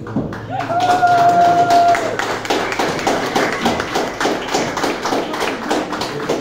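A small audience claps, with one long, high held cheer lasting about a second and a half near the start. Clapping runs on as many quick irregular claps.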